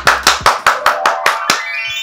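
Quick, steady hand clapping, about seven claps a second, that stops about a second and a half in. A rising run of ringing tones begins near the end.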